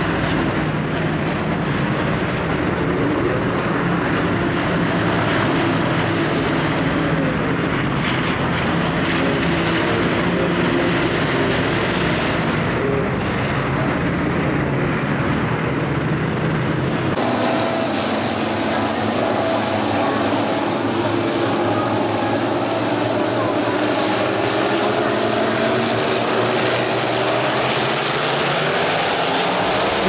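A field of IMCA Sport Modified race cars, their V8 engines running at part throttle as the cars circle a dirt oval under caution, making a steady blend of exhaust notes. About 17 seconds in, the sound changes abruptly and loses much of its low rumble.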